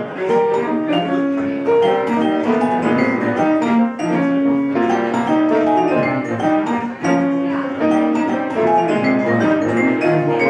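Live instrumental jazz: a vibraphone played with mallets, with a bowed cello holding longer notes beneath it.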